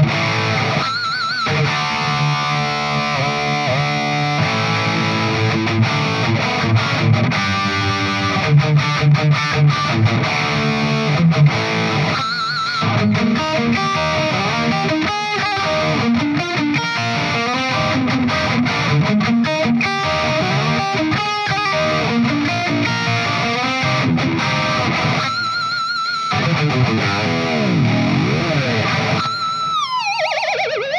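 Charvel Pro-Mod Relic San Dimas electric guitar with humbuckers and a Floyd Rose tremolo, played through a distorted high-gain amp. It plays a lead line of fast runs and held high notes with wide vibrato, ending with a deep whammy-bar dive in pitch near the end.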